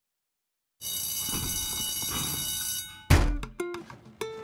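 An electric school bell rings steadily for about two seconds. It stops, and a loud thump about three seconds in starts plucked string notes of music.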